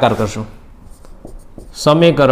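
Marker pen writing on a whiteboard: faint short scratches and taps, between a man's speech at the start and near the end.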